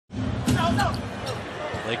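Basketball bouncing on a hardwood court, a few sharp bounces over the low hum of an arena crowd.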